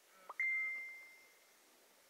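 Phone notification sound: a brief short note, then a single clear ding that rings out and fades over about a second.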